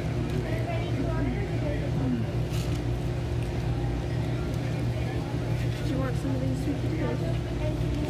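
Restaurant dining-room ambience: a steady low machine hum under faint background talk, with a few small clicks from the table.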